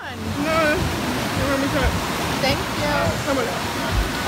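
Indistinct voices of people talking over a steady rush of sea surf.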